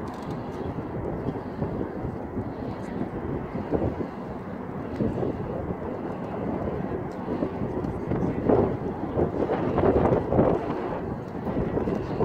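Wind blowing across the microphone with indistinct voices of people nearby, a continuous uneven noise that swells louder for a few seconds near the end.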